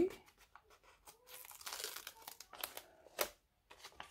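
Planner sticker sheets rustling and crinkling as they are handled, with a few sharp ticks and taps in the second half.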